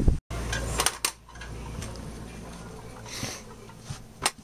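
A few light clicks and clinks about a second in, over a low steady hum, with a brief rustle a little after three seconds.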